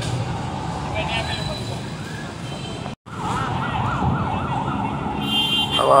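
Street crowd murmur and traffic, then after a brief cut about halfway, a vehicle siren rapidly rising and falling in pitch for about two seconds. A high steady tone joins it near the end.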